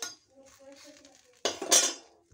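Metal kitchen utensils clattering against each other at the stove: a short clatter at the very start and a longer, louder scraping clatter about a second and a half in.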